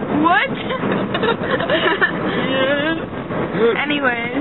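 Young women's voices talking animatedly, some high and swooping in pitch, inside a moving car with steady road noise beneath.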